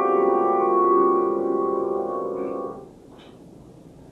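Grand piano holding a dense, dissonant cluster chord that rings and slowly fades, then is damped off abruptly about three seconds in.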